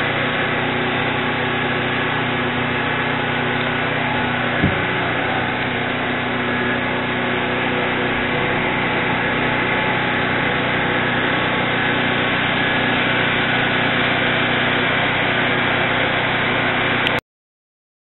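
Steady mechanical hum over a noisy background, with one brief low knock about four and a half seconds in; it cuts off abruptly near the end.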